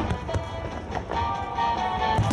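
Fireworks: No. 5 (about 15 cm) aerial shells launching and bursting in quick succession, a few sharp reports over a deep rumble of booms.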